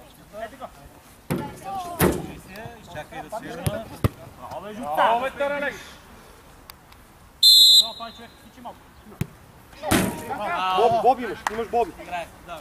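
A referee's whistle gives one short, shrill blast about seven and a half seconds in, the loudest sound here, amid a few sharp thumps of a football being kicked on the pitch and children's shouts.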